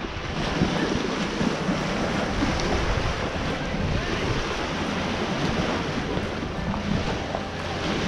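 Small lake waves lapping and splashing against a flat rock shoreline, with wind buffeting the microphone.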